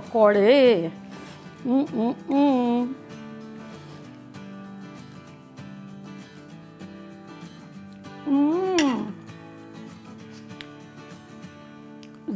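A woman's wordless appreciative 'mmm' sounds, three short gliding hums, over soft steady background music.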